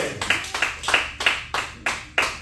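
Rhythmic hand clapping, about three claps a second, growing quieter toward the end.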